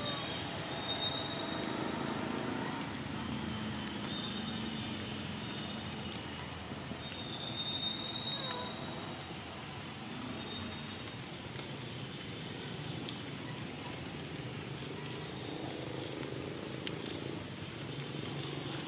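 Steady outdoor background noise with a low rumble, broken by short high-pitched chirps a few times.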